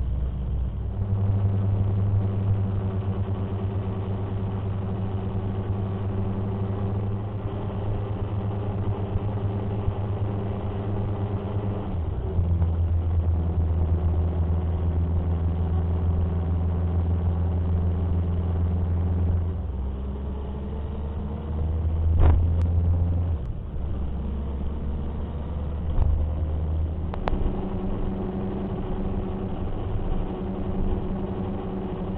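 Motorcycle engine running steadily at road speed, heard from the riding bike, its pitch jumping to a new steady note a few times. Near the two-thirds mark there is a sharp click and the engine note rises briefly.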